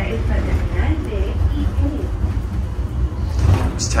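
Steady low rumble of a WEDway automated people mover car running along its guideway, heard from inside the car, with faint voices over it. A man starts speaking near the end.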